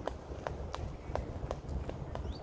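Irregular sharp taps or clicks, about four a second, over a steady low rumble.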